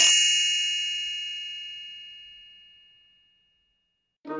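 A single bright chime struck once and ringing out, fading away over about three seconds: the page-turn signal of a read-along picture book.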